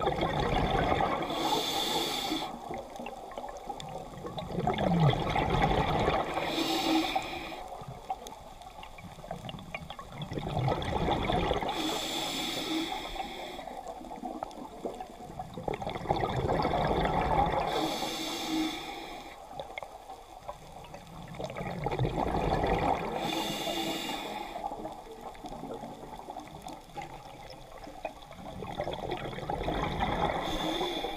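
Scuba diver breathing through a regulator underwater: a short hiss on each inhale and a longer rush of bubbles on each exhale, repeating about every five to six seconds, about five breaths in all.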